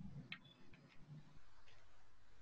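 A few faint, light clicks at uneven intervals, four in two seconds, over low room noise.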